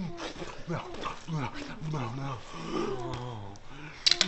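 A man groaning and whimpering without words: a run of short moans that each fall in pitch, then a longer, lower drawn-out groan about two seconds in.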